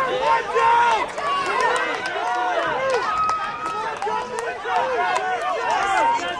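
Many voices at once, spectators shouting and calling out over one another, with no single voice standing out.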